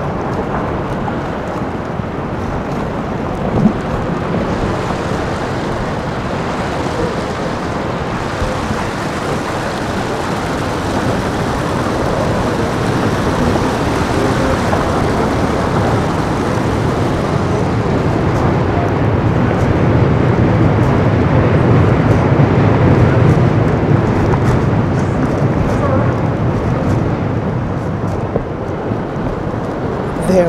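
Outdoor riverside city ambience: a steady wash of engine and traffic noise. A deep rumble swells to its loudest about two-thirds of the way in, then eases off.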